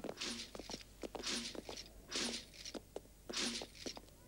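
Slow footsteps on a stone floor, four heavier steps about a second apart with lighter scuffs and clicks between them.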